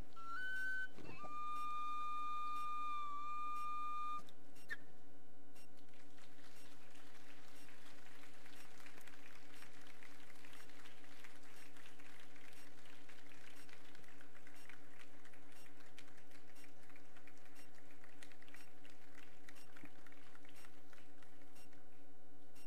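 A flute playing a few long, pure, whistle-like notes that step between pitches and stop about four seconds in. After that comes a faint hiss with light crackling, over a steady low hum.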